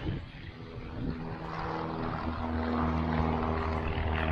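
A light aircraft's piston engine and propeller running nearby, with a steady pitch and getting louder from about a second in.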